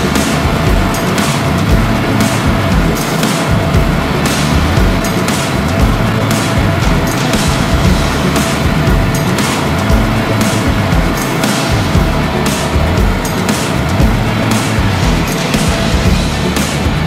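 Loud background music with a steady beat of about two drum hits a second.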